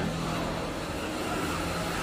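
A car engine running steadily with a low, even hum.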